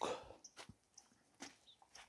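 A nearly silent pause with a faint outdoor background and a few soft clicks.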